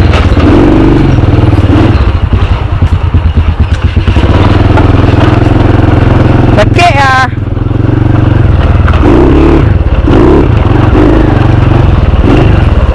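Modified Honda EX5 underbone motorcycle's small single-cylinder four-stroke engine running loud and close as the bike rides off on a test ride, its sound pulsing unevenly for a couple of seconds about two seconds in. A brief wavering high-pitched call cuts across about seven seconds in.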